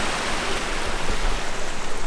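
Steady rush of water pouring through the dam's outlet channel, an even hiss-like roar with no breaks.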